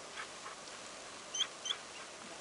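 A Munsterlander dog giving two short, high-pitched whimpers in quick succession, about a second and a half in.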